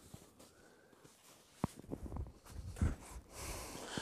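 Quiet handling sounds of a wool blanket hammock as a man puts his weight on it to climb in: soft fabric rustling with a few sharp clicks and knocks, the first about a second and a half in.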